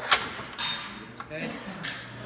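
A sharp metallic clack as a machine-gun trainer's charging handle is pulled back and locked to the rear. A scraping slide sound follows about half a second in, and a lighter click comes near the end.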